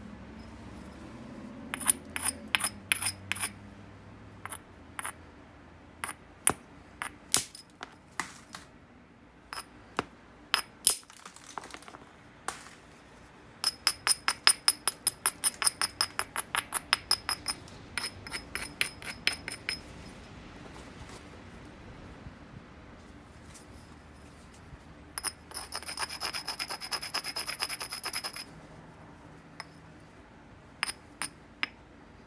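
Edge of a black obsidian biface being rubbed and struck with a small stone, sharp glassy clicks and scrapes. There are scattered strokes at first, then a quick run of about five strokes a second in the middle, then a dense scraping burst near the end. This is the edge-grinding done to prepare striking platforms before percussion flaking.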